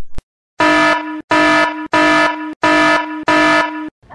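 Buzzer sound effect: five loud, identical blasts, each just over half a second with short gaps, starting after a brief dead silence, played as a warning that marks a dangerous moment.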